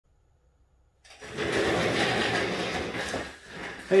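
Rustling and scraping as a person moves in and settles into a seat, starting suddenly about a second in and dying away before he speaks.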